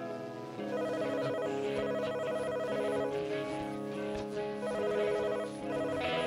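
Quiet intro of a hard rock band's studio recording: sustained, wavering chords that change about once a second, with almost no deep bass.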